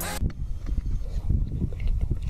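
Music cuts off abruptly just after the start. It is followed by an irregular low rumble of wind and handling noise on a handheld camera's microphone.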